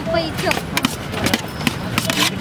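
Voices chattering in a busy street stall, with several sharp clinks and knocks of steel pots, lids and plates being handled.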